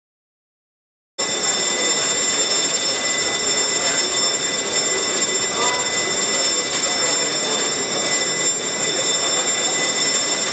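Electric bell ringing continuously in a steady, loud ring that cuts in suddenly about a second in, with the murmur of voices in the hall beneath it: the legislature's bell sounding just before the sitting opens.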